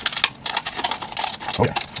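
Red plastic party cup crackling with quick, sharp clicks as it is cut open and bent.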